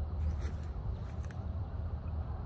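Wind buffeting the microphone outdoors: a steady low rumble, with a few faint light clicks about half a second and a second and a quarter in.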